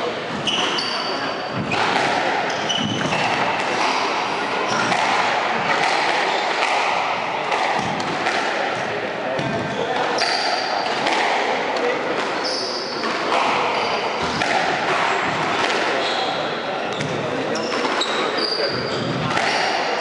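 A squash rally on a wooden court: the ball cracks off the racquets and walls again and again, and shoes squeak briefly on the floor, all echoing in the hall. Voices talk underneath.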